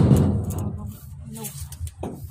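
Indistinct talking, loudest at the start and dropping off after about half a second.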